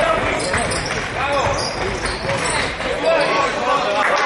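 Basketball game on a wooden gym court: the ball bouncing on the floor and sneakers squeaking in short rising-and-falling chirps, about a second in and again near three seconds, with voices of players and spectators throughout.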